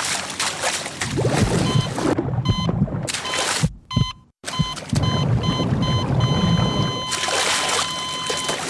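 Water splashing and churning, cut by a brief dropout to silence about four seconds in, with a medical patient-monitor beep sounding about twice a second that then holds as one long steady flatline tone from about six seconds in.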